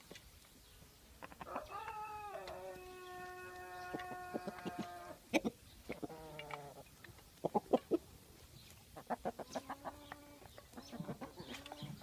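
A flock of Kosovo tricolour chickens calling as they feed, with one long drawn-out call of about three and a half seconds starting about a second and a half in, then shorter calls and quick sharp ticks. A person laughs briefly near the end.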